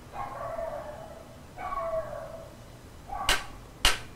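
A dog whining twice, then giving two short, sharp yips about half a second apart near the end, the second the loudest.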